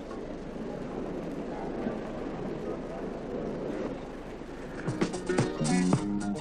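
A steady murmur of a crowd in a gymnastics hall. About five seconds in, music with a sharp rhythmic beat starts and becomes the loudest sound.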